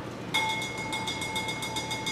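A steady high tone with several overtones starts abruptly about a third of a second in and holds without fading or wavering.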